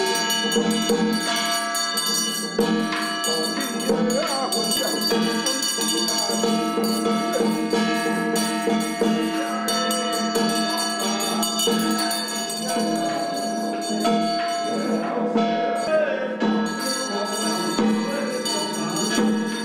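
Taoist ritual music: a wind-instrument melody of long held notes over percussion, with a brass hand bell ringing.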